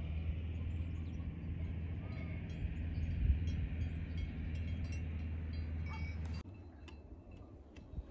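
Wind rumbling on the microphone, with faint clinking of distant cowbells. The rumble cuts off abruptly about six and a half seconds in, leaving a quieter background.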